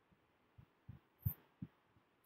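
Quiet pause holding four short, faint low thumps in the second half, each a brief knock with no ringing.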